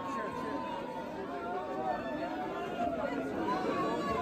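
Crowd chatter: many people talking at once in a large club room, with no music playing.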